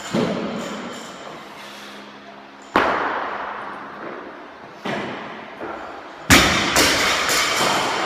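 Loaded barbells with plates hitting the gym floor, four separate thuds, the loudest about six seconds in, each ringing on for about a second.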